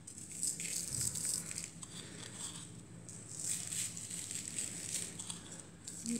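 Granulated sugar pinched by hand from a glass dish and sprinkled over egg-washed croissants on a baking tray: a quiet, grainy rattle that comes and goes in short bursts.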